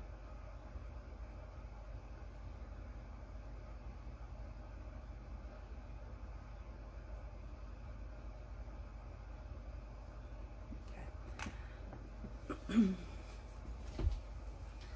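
Quiet room noise with a steady low hum. Late on come a few faint handling clicks and a brief murmured voice sound, then a soft thump at the very end.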